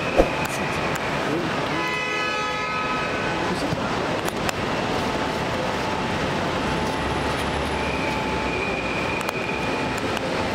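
Steady busy background din with long, flat horn tones, sounding about two seconds in and again from near the end. A sharp knock comes just after the start.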